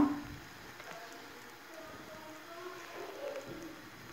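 Quiet stretch with faint, distant voices in the background.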